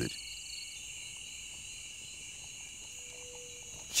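Steady chorus of jungle insects, a continuous high-pitched chirring with no breaks.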